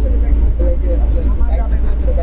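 Loud, steady low rumble of a moving bus heard from inside, with faint voices in the background.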